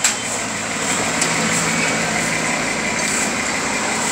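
Steady background noise like distant engines or road traffic, with a single sharp click at the very start.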